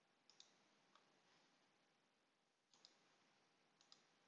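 Several faint computer mouse clicks, some in quick pairs, against near silence.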